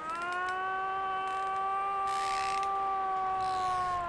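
Cow moose call: one long, steady wail held at a single pitch for about four seconds, starting to drop in pitch right at the end.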